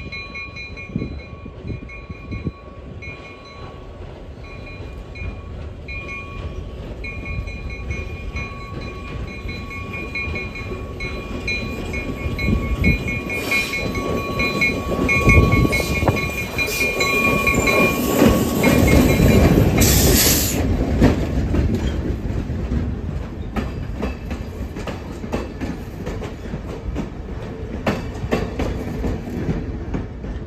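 Diesel locomotive hauling passenger cars approaches and passes, its engine and wheels on the rails growing louder to a peak a little past halfway, then fading as the train moves off. A steady high-pitched whine sounds over the first two-thirds.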